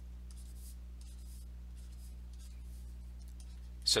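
A series of short, faint scratches of a stylus crossing out numbers on a drawing tablet, over a steady low hum.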